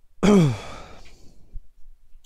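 A man's loud, breathy sigh, falling in pitch and lasting under a second.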